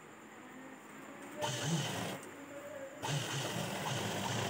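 Sewing machine running in two short bursts of stitching, the first starting about a second and a half in and the second starting about three seconds in.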